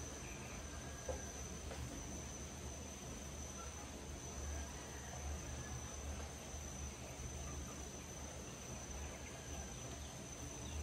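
Insects chirring: one steady high-pitched note, with a faint low rumble underneath and a few faint short chirps.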